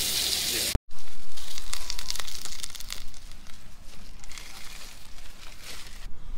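Sausages frying in a cast iron skillet on a camp stove: a steady sizzle, then after a sudden cut a louder crackling and popping that gradually fades.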